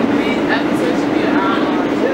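R160A subway car heard from inside while running between stations: a steady rumble of wheels on rail with a constant hum underneath.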